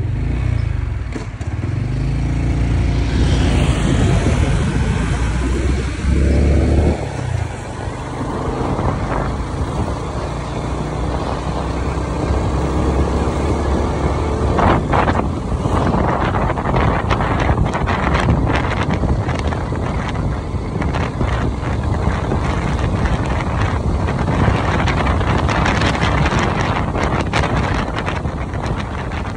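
Motorbike engine running as the bike rides along a street, with wind buffeting the microphone and road noise.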